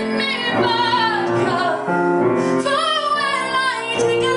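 A woman singing a song into a microphone over instrumental backing, holding two long notes with vibrato.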